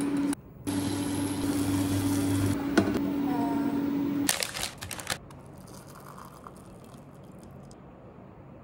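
Kitchen sounds of breakfast cooking: a steady hum runs under the first half, broken briefly near the start. A few sharp clinks and knocks of utensils and dishes come around four to five seconds in, then it goes quiet.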